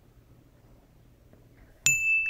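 Near silence, then a single bright bell-like ding sound effect near the end, a steady high tone that keeps ringing. It cues the answer to a quiz question.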